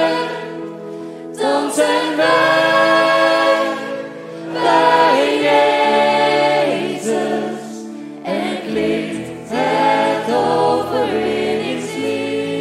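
Live worship band: several singers, men and women, singing a Dutch song together in harmony, in phrases a few seconds long, over soft sustained low accompaniment.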